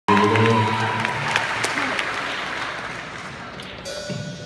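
Audience applauding, slowly dying away. A held musical chord sounds under the applause for about the first second.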